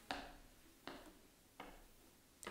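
Near silence: room tone with three faint, brief ticks.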